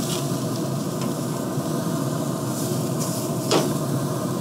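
Thick-cut ribeye steaks sizzling on the grate of a Pit Boss pellet grill over open flame at searing heat, with a single sharp click about three and a half seconds in.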